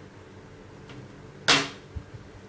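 Small metal scissors: a faint click just before one second in, then one sharp, loud clack about a second and a half in that dies away quickly, as the thread for the model's tow cable is cut and the scissors leave the hand.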